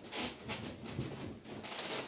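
Cloth rustling as a fabric surcoat is dragged off over the head and shoulders of a man in a chain mail shirt, with the mail rings shifting and chinking as it comes free. The sound is a quiet run of rustles.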